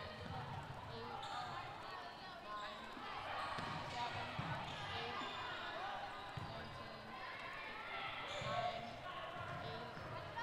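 Indoor volleyball rally on a hardwood gym court: short sneaker squeaks, occasional thuds of the ball, and players' and spectators' voices calling out in the hall.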